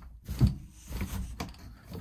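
A few short metallic knocks and clicks as the over-center latch and hook holding down the Taxa Cricket trailer's pop-up roof are worked and clipped in, the sharpest about half a second in.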